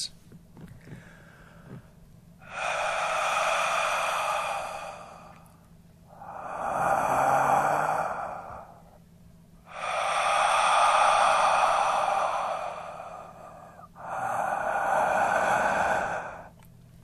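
A man imitating slow, heavy breathing: four long breaths, each lasting two to four seconds with short pauses between. It mimics the eerie breathing he says he heard in the room.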